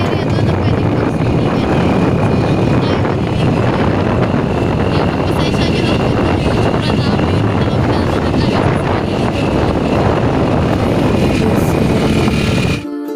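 Wind buffeting the microphone and motorcycle riding noise, a loud steady rush, while riding along the road.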